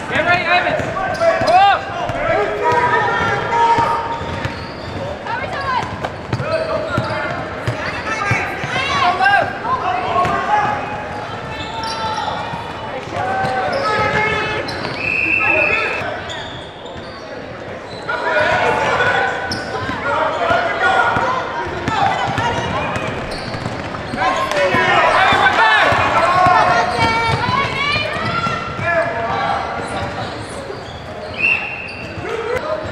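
Basketball bouncing on a hardwood gym floor amid overlapping shouts and chatter from players and spectators in a large gym. A short steady whistle, the referee's, sounds once about halfway through.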